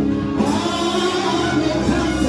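Gospel music: several voices singing together over sustained low notes.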